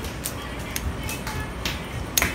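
Pruning scissors snipping twigs and leaves off a ficus bonsai: a few sharp, separate cuts.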